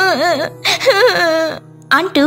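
A young girl's voice crying in two wavering wails, the first with a shaky, sobbing pitch, dying away about a second and a half in, over soft background music.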